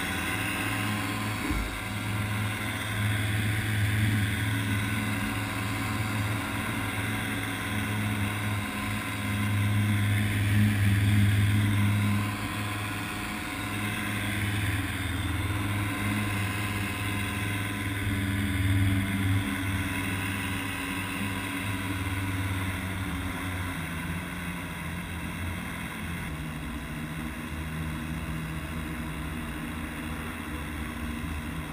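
Paramotor engine and propeller running steadily in flight, a continuous low drone that swells a little about a third of the way in and eases slightly toward the end.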